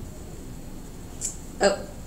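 Quiet room tone, then near the end a woman's single short, surprised "oh".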